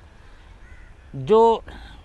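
A man's voice saying a single drawn-out word about a second in, after a short pause filled with faint outdoor background noise.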